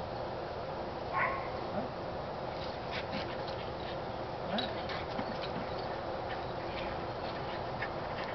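Small terrier-type dog giving a few short, excited yips and whines during play, the strongest about a second in, over a steady outdoor background hiss.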